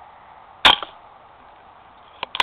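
A single rifle shot about two-thirds of a second in, sharp and loud, followed by a smaller knock a fraction of a second later.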